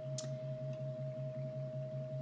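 A steady low hum that pulses at an even rate, with a held higher tone above it, and one sharp click shortly after the start.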